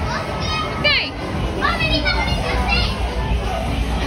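Children shouting and squealing at play, with a sharp high squeal about a second in and a run of high calls in the middle, over a steady low hum.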